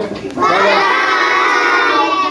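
A classroom of young children shouting together in one long, drawn-out chorus, calling goodbye as they wave. It starts about half a second in and holds steady.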